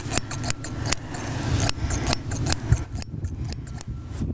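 Thinning scissors snipping through the underside of a horse's mane: a quick, irregular run of small snips for about three seconds, which then stops.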